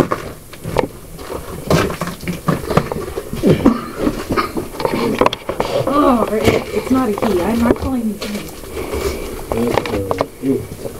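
Indistinct voices talking low, most clearly in the second half, over scattered knocks and scuffs of footsteps on snowy wooden steps.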